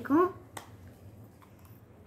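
A voice finishing a word, then one sharp click about half a second in and a few fainter clicks later, from hard plastic toy bricks and gears being handled.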